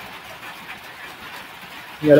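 Steady faint background noise, a hiss and low rumble with no clear events, in a pause between spoken phrases.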